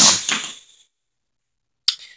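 Dead silence after a voice trails off, broken near the end by a single short, sharp click with a brief faint ring.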